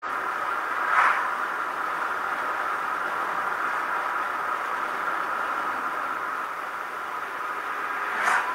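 Steady road and tyre noise of a car at about 68 km/h, heard from inside the car, with two brief swells as oncoming cars pass, about a second in and near the end.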